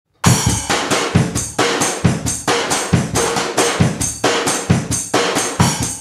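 A drum kit playing a steady beat with kick and snare to open a song, starting a moment in, with hits about twice a second.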